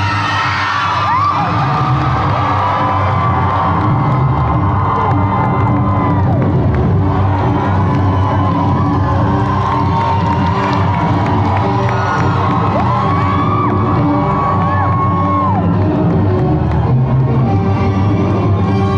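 An audience cheering and whooping over loud music, with a few long held whoops rising and falling above the crowd noise.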